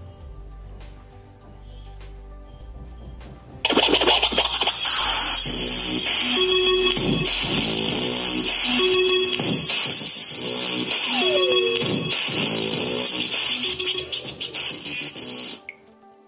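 A song playing through a small SAP SP05 portable Bluetooth speaker. A quiet, low opening gives way to very loud music about three and a half seconds in, and the music stops shortly before the end.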